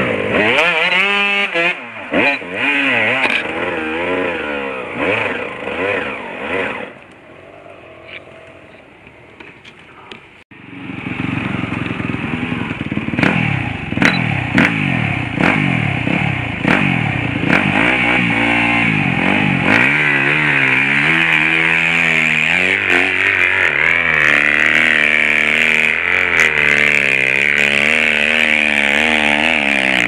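Dirt bike engines revving hard, the revs climbing and dropping again and again as riders work their bikes up a steep climb. The engines ease off for a few seconds about a third of the way through, then the second half holds long stretches of high revving.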